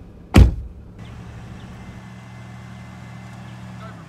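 A Mitsubishi Challenger four-wheel drive's engine running steadily at low revs, with no revving. A single loud, sharp thump comes about half a second in.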